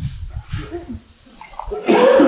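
Indistinct speech, with a sudden loud noisy burst right at the end.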